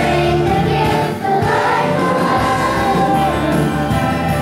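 Children's choir singing together, with sustained sung notes throughout.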